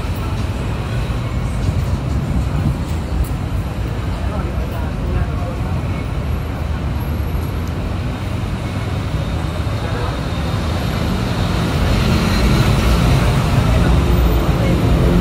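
Steady city road traffic running alongside a sidewalk, with the voices of passersby in the mix; it grows a little louder near the end.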